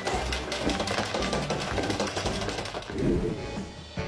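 Hand-cranked circular knitting machine running, its plastic needles clicking rapidly and evenly, with background music.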